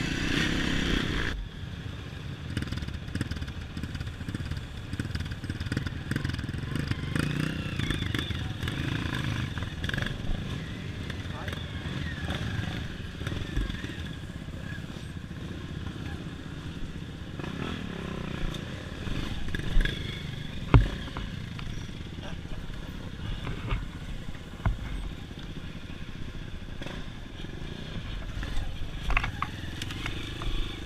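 Honda CRF230 dirt bike's single-cylinder four-stroke engine running at low, varying revs on a slow trail ride, louder and fuller for the first second or so. Two sharp knocks come about two-thirds of the way through, from the bike hitting ground or roots.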